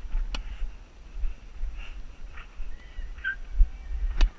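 A tennis ball struck by a racket with one sharp crack about a third of a second in, then the player's shoes scuffing and briefly squeaking on the hard court during the rally. A low rumble of wind and movement on the head-mounted camera runs underneath.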